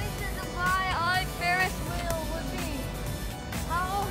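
People's voices talking and calling out nearby over a steady low rumble of outdoor city background.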